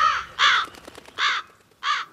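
Crows calling: a string of short, harsh caws, about four in two seconds, each clipped off sharply.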